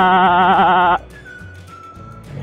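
A man's voice holding one long, wavering vowel that stops abruptly about a second in. After it comes a quieter background with a faint thin tone.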